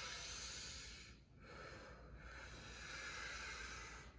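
A man breathing out slowly and audibly through the mouth during a cool-down stretch: two long, soft exhalations with a short break just over a second in.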